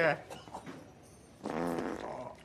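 A short, low fart lasting about half a second, heard about one and a half seconds in: a man soiling his pants. It follows the tail end of a voice at the very start.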